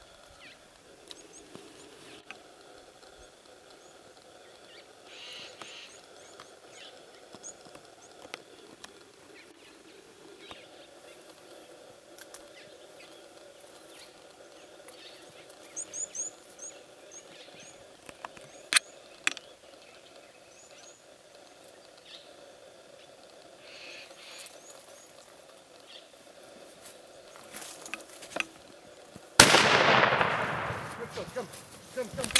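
Faint, quiet bush with scattered small clicks and a few short bird chirps midway. Near the end a sudden, very loud rifle shot cracks out, its report lingering for a couple of seconds.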